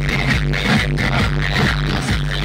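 Loud electronic dance music played through a street DJ sound system's loudspeaker stack, with a heavy, steady bass beat at about two beats a second.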